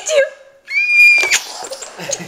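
A toddler's brief laugh, then a high-pitched squeal held on one note for a little over half a second.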